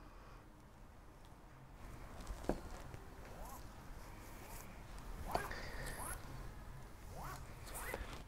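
A single strand being drawn out of woven carbon fiber cloth: a faint, zipper-like rasp as the fibre slides through the weave, with a few sharp ticks where it catches. Pulling the strand leaves a straight line along the weave for cutting.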